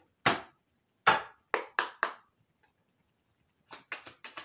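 Five sharp knocks on a hard wooden surface in the first two seconds, unevenly spaced, then a quick run of lighter clacks starting near the end.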